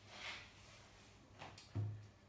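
Soft rustling of a cloth rag handled in rubber-gloved hands, a couple of faint swishes, followed by a short low hum-like sound just before the end.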